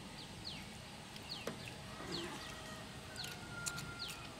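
Faint bird chirping in the background: a string of short, high notes that each slide downward, roughly one or two a second.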